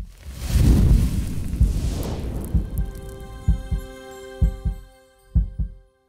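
Logo sting music for an animated channel outro: a rushing whoosh swells over a deep rumble, then a held synth chord rings on while deep thumps come in pairs, about one pair a second.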